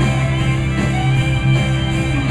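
Live rock band playing loudly: electric guitar, bass and drums, with a violin in the mix.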